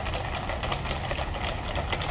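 Hooves of a column of ceremonial cavalry horses clip-clopping on a tarmac road, faint and irregular, over a steady low rumble.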